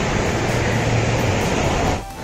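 Sea surf breaking and washing up a sandy beach: a steady rushing noise.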